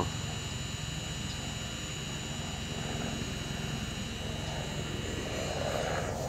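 DJI Mavic Pro quadcopter hovering overhead, its propellers giving a steady whine over a low hum. The pitch holds even: the drone is holding position rather than following.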